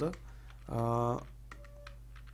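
A man's brief held hesitation hum, steady in pitch, about a second in, then a few faint computer keyboard clicks near the end.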